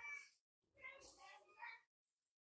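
Two faint wavering vocal sounds, a short one at the start and a longer one of about a second and a half, then near silence.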